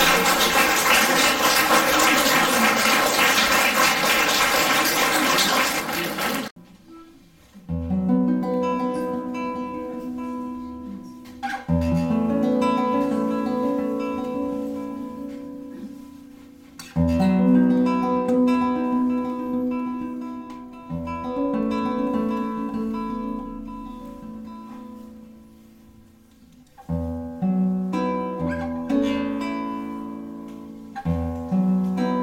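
Audience applauding, breaking off suddenly about six seconds in. Then a nylon-string classical guitar plays a slow introduction of plucked chords, each struck and left to ring and fade before the next.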